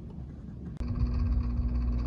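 Quiet background noise that changes abruptly, a little under a second in, to a louder steady low hum with one faint held tone.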